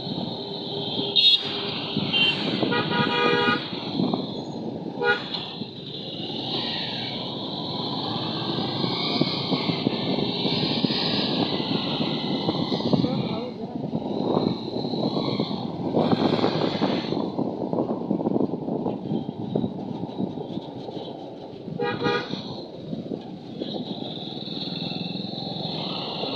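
Street traffic heard from a moving two-wheeler: steady engine and road rumble with wind on the microphone. Vehicle horns beep briefly about a second in, in a short series around three seconds, once near five seconds and again around twenty-two seconds.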